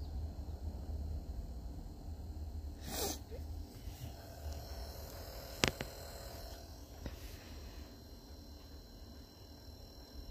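Low rumble of a handheld phone camera being moved about, with a short breathy rush about three seconds in and a single sharp click a little past halfway.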